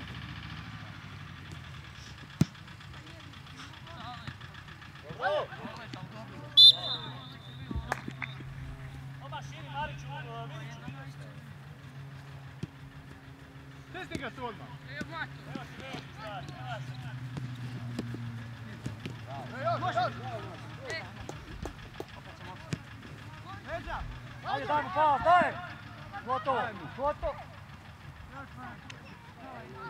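Youth football match: players shouting to each other across the pitch, loudest near the end, with a few sharp knocks of the ball being kicked and a steady low hum behind.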